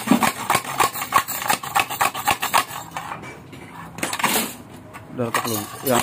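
Rapid metallic clinking, about four or five knocks a second, of a steel rod worked back and forth inside a CMS aftermarket motorcycle muffler to knock loose its tack-welded internal baffle. The clinking stops about three seconds in, and a short scraping rush follows about a second later.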